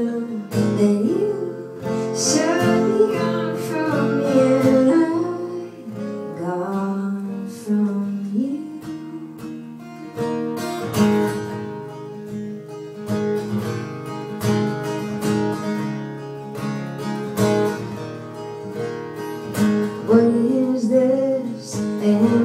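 Live folk song: a woman singing over a strummed acoustic guitar. After about nine seconds the voice drops away and the guitar carries on strumming alone.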